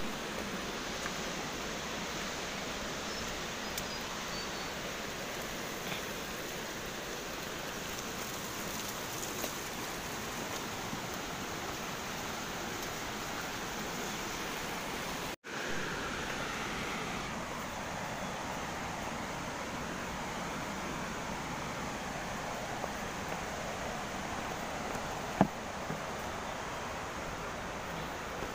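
Steady rushing of flowing mountain water, an even hiss-like noise, cut off for an instant about halfway through. A single sharp knock sounds near the end.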